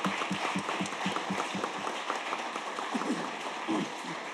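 Audience applauding, with one pair of hands close by clapping fast and evenly, about six claps a second, through the first half.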